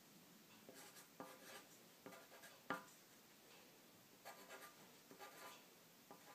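Pencil writing on paper: quiet scratchy strokes in short bursts with brief pauses between them, and one sharp tap of the pencil a little before the middle.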